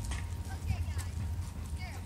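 Footsteps of a person and a dog walking on a concrete path, with scattered light taps over a steady low rumble on the microphone.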